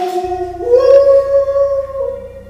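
Music with a high singing voice holding a long note, which steps up to a higher held note about two-thirds of a second in.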